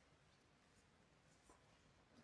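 Near silence: faint ice-rink room tone, with one soft click about one and a half seconds in.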